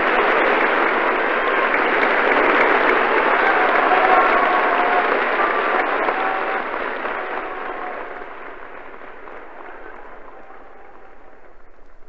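Theatre audience applauding on a 1933 live recording, the clapping dying away over the last few seconds.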